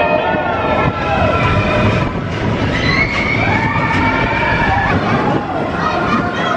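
Expedition Everest steel roller coaster train running along its track with a steady low rumble, with riders' voices over it.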